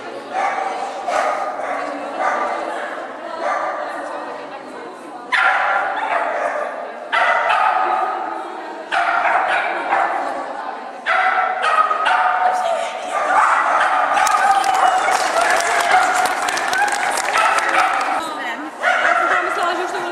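Dog barking and yipping repeatedly in an echoing hall, each bark trailing off, with a quicker run of barks a little past the middle.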